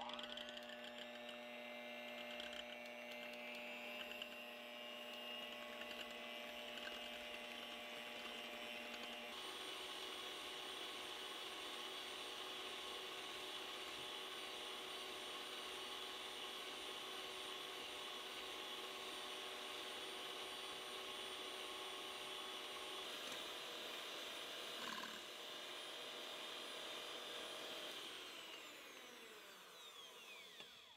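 Electric hand mixer running at medium speed, its steady motor whine and whirring beaters whipping warmed whole eggs and sugar into a foam for a genoise. Near the end the motor slows and winds down.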